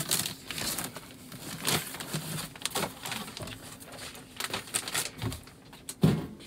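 A plastic poly mailer rustling and crinkling as it is handled, in irregular short bursts.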